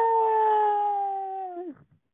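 A man's long, high, drawn-out wail of put-on crying, heard over a phone line: one held note that sags slowly in pitch, then drops and breaks off near the end.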